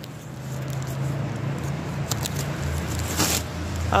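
Steady low engine hum of street traffic, growing louder, with a short rasping scrape a little after three seconds in.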